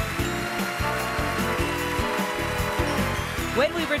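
Band music playing over continuous applause from a large audience giving a standing ovation.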